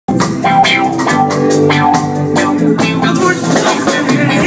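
Live band playing an instrumental passage: keyboard, guitar and bass over drums with a steady beat.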